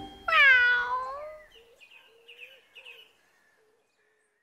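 A domestic cat meows once, about a third of a second in: one long call that falls in pitch and fades out. Faint short chirps follow until about three seconds in.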